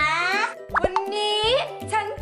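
A child talking over light children's background music, with a quick plop-like sound effect just under a second in.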